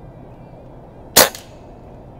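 A single shot from a Beeman QB Chief precharged pneumatic (PCP) air rifle, a sharp crack about a second in with a brief ring after it, with the rifle's velocity turned up.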